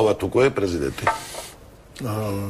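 A person speaking for about a second, then a brief pause with only a faint hiss.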